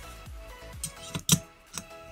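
Background music with steady tones, over which come a few light clicks and one sharp metallic click a little past one second in: the hex driver being set against the cylinder-head screws of a small nitro RC engine.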